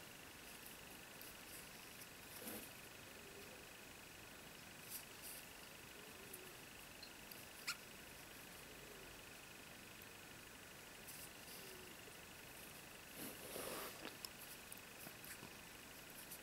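Near silence with a faint steady high whine, broken by a few soft rustles and one sharp click from hands working a crochet hook through yarn.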